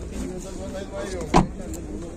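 A car door shut once: a single sharp thud about a second and a half in.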